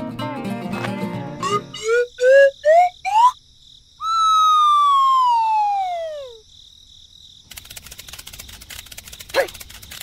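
Edited-in cartoon sound effects: after the music stops, four quick upward-gliding blips step higher and higher in pitch, then one long whistle-like tone slides downward. It is followed by a steady, faint chirring of insect ambience with a couple of light clicks.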